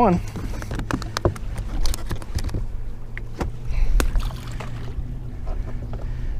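Wind-driven chop rumbling against a fishing boat's hull, with scattered light clicks and knocks of rod and tackle being handled in the boat.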